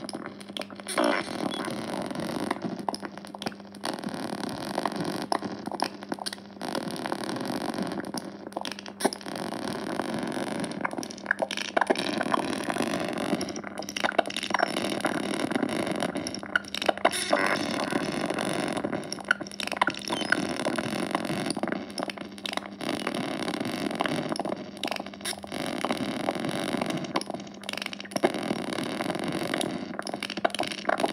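Modular synth feedback noise: a Parasite Amplifier module feeding back on itself into a glitching Sound of Shadows module, both power-starved by Famine modules. It makes a dense, gritty noise over a steady low hum, broken all through by sudden dropouts and crackles, with a few sweeping pitch glides about halfway through.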